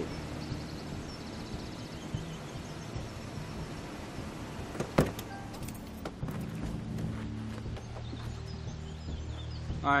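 Film score with a steady low drone, and about halfway through a sharp click of a car door opening, followed by a few lighter knocks.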